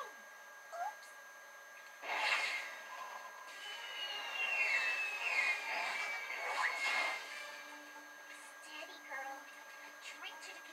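Cartoon sound effect of a falling warhead whistling: one long whistle sliding slowly down in pitch from about three and a half to seven seconds in, heard from a TV speaker. A loud rush of noise comes just before it, about two seconds in.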